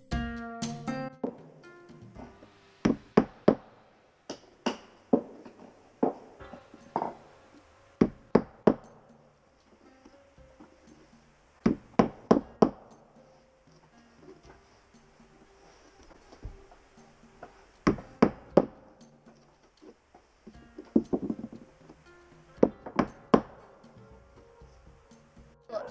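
Mallet strikes on a sharp raking tool, knocking old caulking out of a wooden boat's deck seams: sharp knocks in quick groups of two to four, a few seconds apart. Soft plucked-string background music plays at the start and faintly under the knocks.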